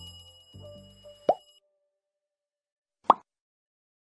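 Cartoon-style sound effects of a subscribe-and-like button animation. A short jingle of low notes under a ringing bell-like chime ends in a pop just over a second in, and after a pause a single louder pop comes about three seconds in.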